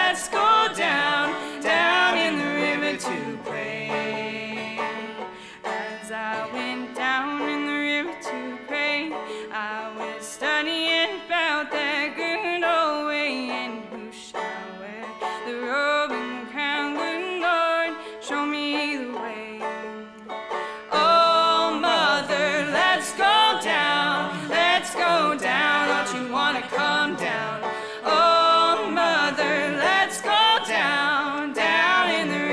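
Live acoustic string band with banjo and upright bass playing a traditional gospel song, with a lead voice and harmony singing. The sound thins out for a stretch in the middle, then turns fuller and louder about two-thirds of the way through.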